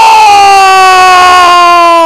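A football commentator's long, drawn-out "gol" cry greeting a goal: one loud voice held on a single vowel, its pitch slowly falling.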